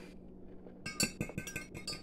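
Metal fork stirring a drink in a glass tumbler, clinking rapidly against the glass from about a second in.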